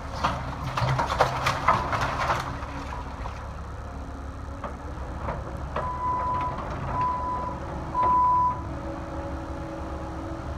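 Cat 308E2 mini excavator's diesel engine running steadily while its bucket and thumb crunch and snap old wooden boards in the first couple of seconds. Later the machine's alarm beeps three times, about a second apart, the last beep loudest.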